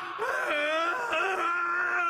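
A man howling and wailing in a long, drawn-out cry whose pitch wavers.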